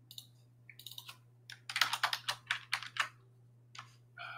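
Typing on a computer keyboard: a run of quick keystrokes, a few scattered at first and then a dense burst through the middle, over a faint steady low hum.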